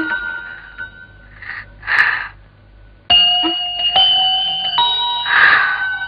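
Film background score: bell-like keyboard notes held in chords with a few short swishes. There is a brief lull about halfway, then the notes come back in sharply.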